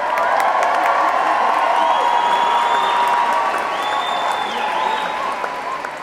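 Large audience applauding in a hall, with some cheering, dying down near the end.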